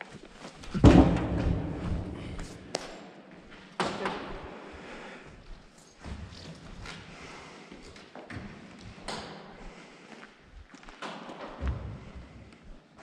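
A heavy thud about a second in, echoing through a large empty hall, followed by a second thud near four seconds and a few softer knocks.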